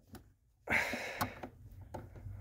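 After a half-second of silence, a short breathy exhale, then a single sharp click just over a second in, with a fainter tick near the end.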